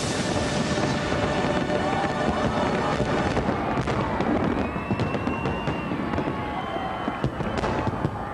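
Aerial firework shells bursting in dense, continuous crackles and pops, with a couple of sharper bangs near the end, over soundtrack music.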